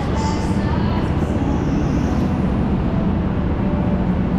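Indoor rental go-kart rolling slowly, heard from on board: a steady, loud low rumble from the kart with no change in speed.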